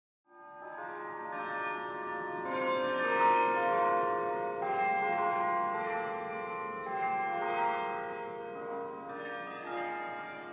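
Intro music of ringing bells: many long, overlapping tones that start a fraction of a second in and sustain throughout.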